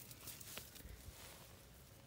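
Near silence: faint rustling of garden plants and handling noise, with one soft click about half a second in.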